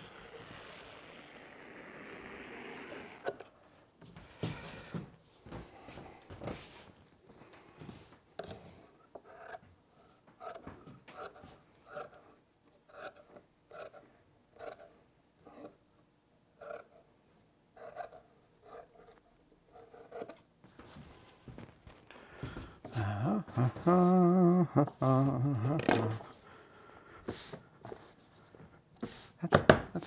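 Large shears snipping through thick wool pool-table felt, a short crisp cut about twice a second. Near the end a louder wavering pitched tone is held for about three seconds.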